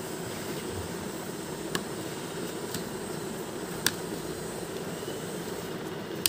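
Steady hum and hiss of a running room fan, with two brief sharp clicks from a pen and the book's pages being handled, about two and four seconds in.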